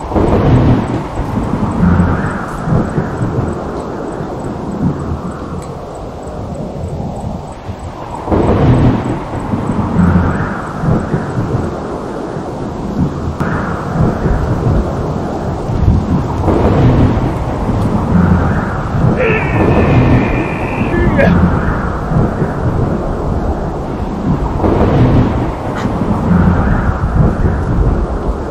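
Thunder rumbling again and again, a deep roll that swells every few seconds, laid over the scene as a dramatic sound effect.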